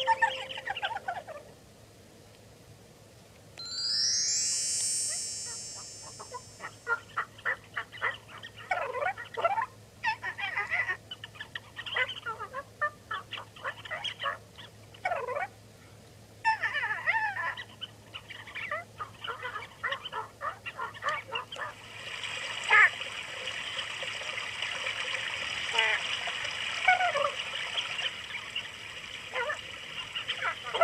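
Effects-processed children's video soundtrack: a rising sweep of high tones about four seconds in, then a long run of short honking, bird-like calls, with a steadier hiss and high tones joining about two-thirds of the way through.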